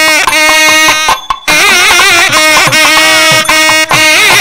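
Nadaswarams playing a Carnatic melody: held notes alternating with sliding, wavering ornaments, broken by a brief pause a little over a second in.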